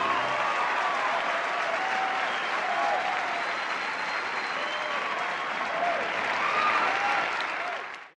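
Audience applauding, a dense steady clatter of clapping with a few voices calling out over it, cut off abruptly at the end.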